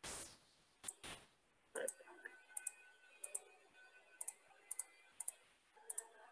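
Faint computer mouse button clicks: about eight short, sharp clicks at irregular intervals, many coming in quick pairs.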